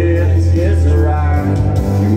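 Karaoke: a backing track with a heavy steady bass played over a PA speaker, with a man singing along into a handheld microphone.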